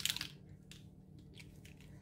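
A brief squish from a small plastic dropper bottle of alcohol ink being squeezed, followed by a few faint light rustles.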